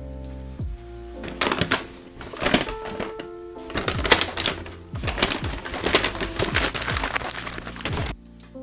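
Plastic and paper bags crinkling and rustling in repeated bursts, starting about a second in, as rubbish is sorted by hand. Lo-fi background music plays underneath.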